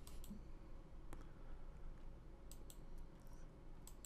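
A handful of faint computer mouse clicks, irregularly spaced, against quiet room tone.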